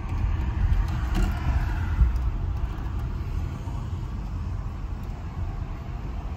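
Car interior noise while driving: a steady low rumble of engine and tyres heard from inside the cabin, easing off slightly towards the end.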